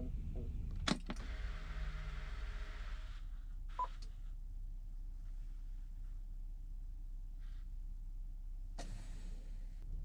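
Heavy truck's diesel engine switched off with the ignition key: a click, a brief rush of noise, then the engine runs down and stops within about two seconds, leaving a faint steady hum. A short beep follows about a second after.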